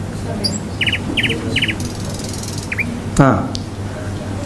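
A small bird chirping: three short trilled chirps about 0.4 s apart, with a few thin high whistles and a short falling chirp, over a steady low hum.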